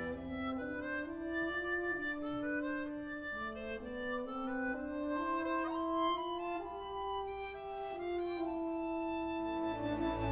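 Chromatic harmonica playing an unaccompanied-sounding solo melody of held notes that move step by step, with the orchestra only faint beneath it.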